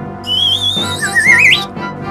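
Background music with a whistle sound effect laid over it: a high thin tone gliding slowly upward, joined about a second in by a wobbling whistle sliding up in pitch, both stopping about a second and a half in.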